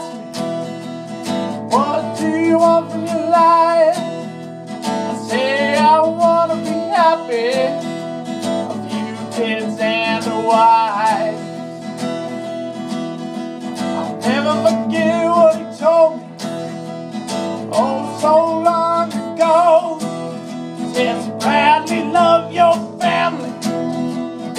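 Acoustic guitar strummed steadily under a voice holding a slow, wavering melody with no clear words.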